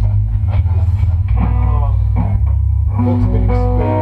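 A rock band playing live in rehearsal: drum kit, bass guitar and electric guitar together, with a heavy, steady bass.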